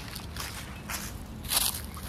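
Footsteps on grass strewn with dry leaves: about three steps, the loudest about one and a half seconds in.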